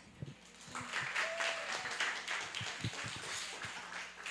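Audience applauding, starting about a second in and thinning out near the end.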